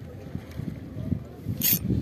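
Low, uneven rumble of wind and handling noise on the microphone while fishing with a spinning rod, broken near the end by one brief, sharp hiss.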